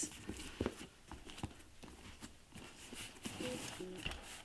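Faint handling of a packed Louis Vuitton Capucines BB leather handbag: a few soft rubs and light clicks as its flap is closed and the bag is lifted.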